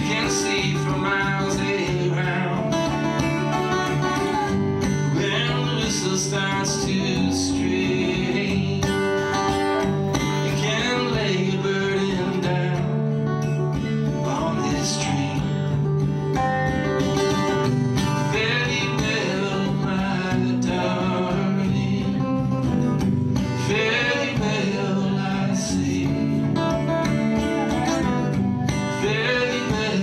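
Live acoustic country band playing: acoustic guitar strumming over upright bass, with a Dobro resonator guitar playing sliding lines.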